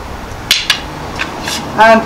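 A pair of escrima sticks knocked together: two sharp clacks about half a second in, then two fainter taps.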